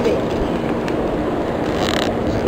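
Steady street traffic noise, with a vehicle engine running nearby and holding a low, even hum.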